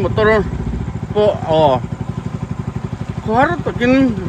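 A small boat's engine running steadily with a fast, even putter, under men's voices talking.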